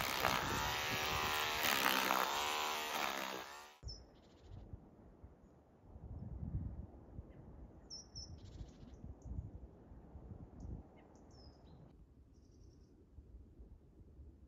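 A loud pitched, wavering sound for the first four seconds that cuts off abruptly. It is followed by faint outdoor ambience with a low rumble and a few short, high bird chirps.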